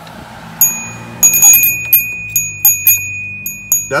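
Stainless steel rod bell in a Bell Buddy holder on a surf fishing rod, jingling in about a dozen uneven strikes: a quick cluster about a second in, then single strikes, with a clear ring that carries on between them. It is the bite alarm a shore angler hears when a fish nibbles or hits the bait.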